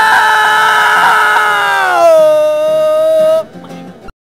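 A man's loud drawn-out yell on one held note, which drops to a lower pitch about two seconds in and cuts off shortly before the end.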